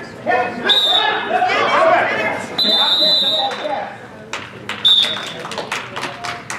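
A referee's whistle blown three times, with a short blast about a second in, a longer blast of about a second near the middle, and another short blast about five seconds in. Voices shout over it, and there are a few sharp taps in the last seconds.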